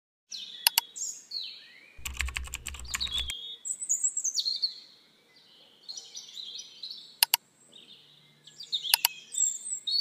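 Intro sound effects: bird chirps throughout, with sharp clicks like a mouse button. A quick run of clicks over a low hum comes about two seconds in, and single clicks come near the start, around seven seconds and near the end, as a cursor clicks a subscribe button and bell.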